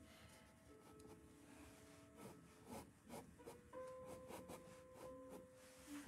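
Near silence: quiet room tone with a few faint held tones that shift in pitch every second or two, and a few soft ticks.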